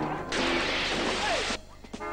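Loud crash and clatter of a metal garbage can, lasting just over a second and cut off abruptly.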